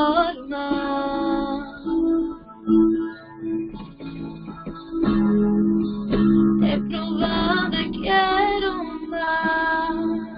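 Worship song: a voice singing over strummed acoustic guitar, with a quieter instrumental stretch in the middle.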